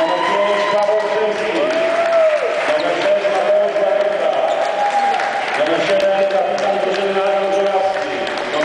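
An announcer's voice, drawn out and echoing through a public-address system in a sports hall, calling out a team's players over a crowd's applause.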